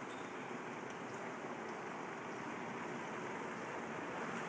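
Steady, even background noise of a large, nearly empty indoor mall concourse, with no distinct events.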